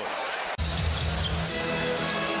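Basketball arena sound from a game broadcast, with a ball being dribbled on the hardwood court. An abrupt cut about half a second in brings steady arena music under the crowd.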